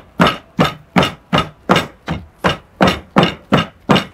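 Stone pestle pounding green leaves in a stone mortar: a steady run of evenly paced strikes, about three a second.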